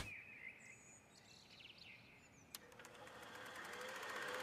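Near silence with a few faint bird chirps in the first half, a single click about two and a half seconds in, then a faint hiss that slowly grows louder.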